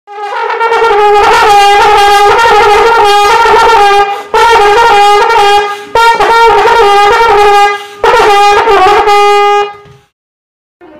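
Solo trombone playing fast jazz runs high in its range. It plays in four phrases, and each phrase ends on a held note. There are short breaks about four, six and eight seconds in, and the playing stops just before the end.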